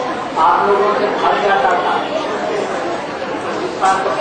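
Speech: voices talking in a large hall, with chatter.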